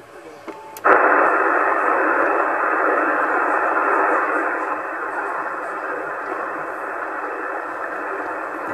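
CB transceiver receiving in upper sideband on 27 MHz, its speaker fed through a DSP filter: a narrow band of static hiss opens abruptly about a second in and runs on steadily, easing a little in the second half. No voice stands out of the band noise; the weak station being listened for is at most barely audible.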